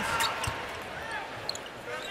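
A basketball being dribbled on a hardwood court, with a thud about half a second in, over low arena crowd noise.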